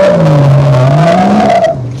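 BMW-engined Nissan Patrol accelerating hard on a loose dirt track, the engine note dipping and climbing again, then dropping away near the end, with the tyres throwing up dirt.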